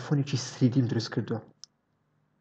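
A person speaking for about a second and a half, followed by a single short computer-mouse click.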